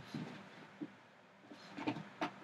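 Faint handling noises as the packaging of a small NYX eyeshadow palette is opened: soft rustling, a light click a little under a second in and a couple of quick clicks near the end.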